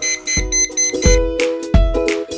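Clip-on audible liquid level indicator on a mug's rim beeping rapidly, about five high beeps a second for just over a second, the signal that the poured water has reached the top. Background music with a steady beat plays underneath.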